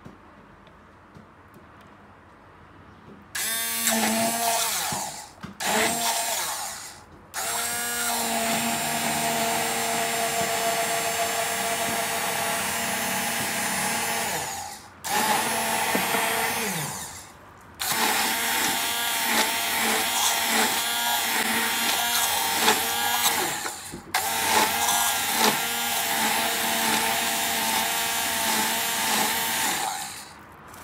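Handheld immersion blender motor running in about six separate runs with short stops between, starting a few seconds in, with a steady whine that winds down at each stop. It is blending a hot water phase into melted butters and emulsifying wax, turning the mix into an emulsion.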